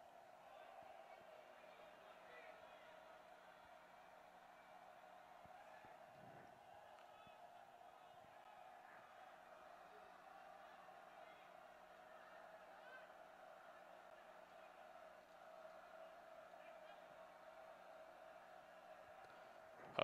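Near silence: a faint steady background hum, with a few faint distant voices now and then.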